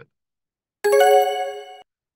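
A bright two-note electronic chime sound effect, the kind used with a pop-up subscribe-and-bell button, starting about a second in, with the second note entering just after the first; it stops abruptly after about a second.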